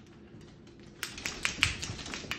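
A dog's claws clicking on a hardwood floor as it steps about: a quick run of sharp clicks starting about halfway through, after a quiet first second.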